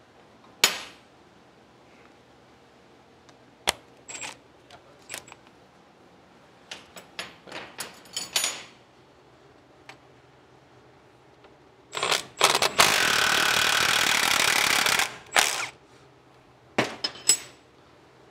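Sockets and tools clicking and clinking, then about twelve seconds in a Milwaukee Fuel cordless impact wrench hammers for about three seconds, breaking loose the bolts that hold the drum-brake backing plate to the spindle.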